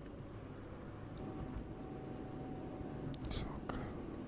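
Low steady rumble of a moving car, heard from inside the cabin, with a soft whispered "yes" near the end.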